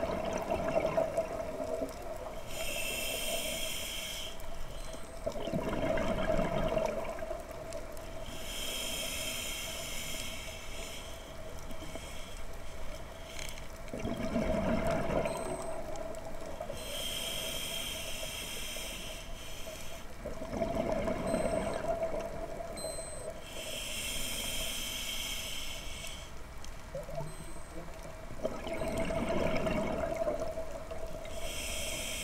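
A scuba diver breathing underwater through a regulator. A hissing inhale through the regulator comes every six to seven seconds, each followed by a bubbling rumble of exhaled air; four breaths in all. A steady faint hum runs underneath.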